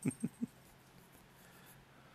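Graphite pencil sketching on a paper drawing pad, faint scratching strokes. Three brief soft sounds come in the first half second, louder than the drawing.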